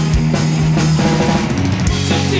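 Rock band playing live: electric guitar, bass guitar, keyboards and drum kit, with a held bass note and a steady kick-drum beat of about four strokes a second.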